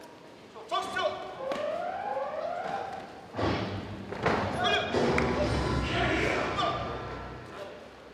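Shouting voices during a taekwondo bout, then a sudden loud thud about three and a half seconds in as kicks land and a fighter is knocked down onto the mat, followed by a loud stretch of mixed voices and impacts in a large hall.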